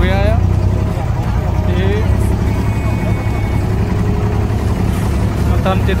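The engine of a wooden abra ferry boat runs with a steady low rumble as the boat slows to come in and dock.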